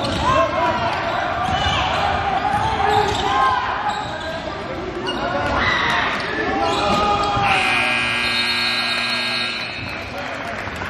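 Basketball dribbling on a hardwood court with sneakers squeaking and voices calling out, echoing in a large gym. For the last couple of seconds a steady held tone sounds.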